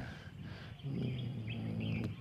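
Faint bird chirps in the background, with a man's low, steady hum of hesitation starting about a second in.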